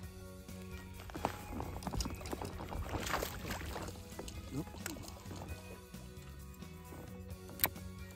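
Background music, with a hooked fish splashing and thrashing at the water's surface for a few seconds starting about a second in. A single sharp click comes near the end.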